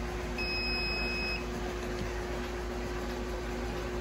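RCBS ChargeMaster 1500 electronic powder dispenser giving one steady beep about a second long, its signal that the powder charge is weighed out and ready. A steady low hum runs underneath.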